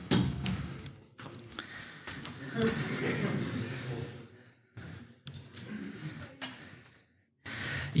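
Quiet, indistinct talking away from the microphone, with a knock right at the start and brief near-silent gaps.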